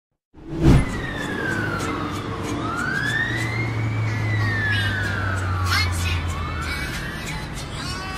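Intro of a sped-up rap track: a siren-like wail sweeping slowly down and up in pitch over a held low bass note, with light regular clicks. It opens with a sharp hit just under a second in.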